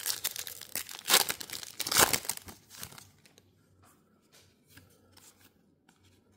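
A trading-card pack's wrapper being torn open and crinkled, a crackling tear that is loudest in the first three seconds. After that come a few faint clicks as the cards are handled.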